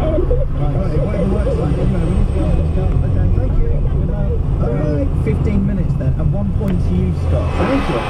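People talking indistinctly over the steady low rumble of a car driving, heard from inside the cabin.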